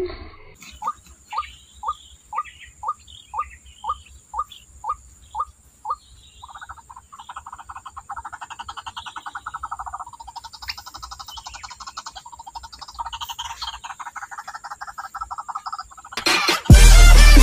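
White-breasted waterhen (ruak-ruak) calling: about eleven short rising notes, two a second, then a fast, continuous pulsing croak from about six seconds in.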